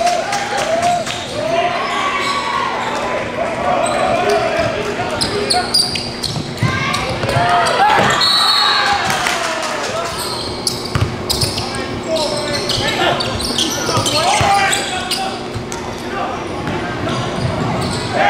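A basketball bouncing on a hardwood gym court during live play, with repeated sharp ball impacts. Players and spectators shout indistinctly, and the sound echoes around the large hall.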